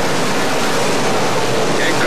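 Pack of sportsman dirt late model race cars running under power through a turn: a loud, steady blur of engine noise.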